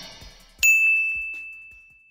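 A single bright ding sound effect about half a second in: one high, clear bell-like tone that rings on and fades away over about a second and a half. Before it, the tail of drum-backed music dies away.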